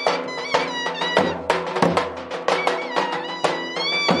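Live Turkish folk music: large davul drums beaten in a steady beat of about two to three strikes a second under a violin playing a wavering melody.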